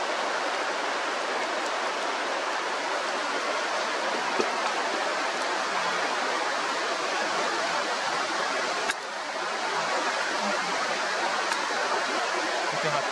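Steady rush of flowing river water over a shallow, stony bed, with a brief dip about nine seconds in.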